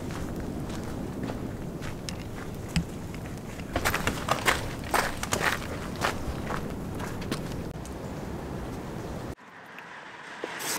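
Footsteps walking down a dirt and gravel path, with a run of sharper, louder steps from about four to six seconds in; the sound cuts off suddenly near the end.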